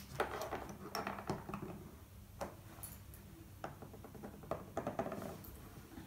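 Small plastic Playmobil animal figures being handled and set down on a tabletop: a scatter of light clicks and taps.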